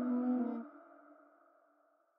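The closing notes of a dark hip hop instrumental beat: a held chord that stops about two thirds of a second in, leaving a ringing tail that fades away.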